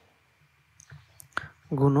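A few small clicks in a pause, the sharpest about a second and a half in, then a spoken word near the end.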